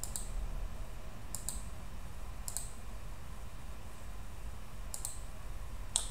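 Computer mouse button clicks, about five short sharp clicks: one at the start, a quick pair about a second and a half in, then one near the middle and one near the end, over a faint steady low hum.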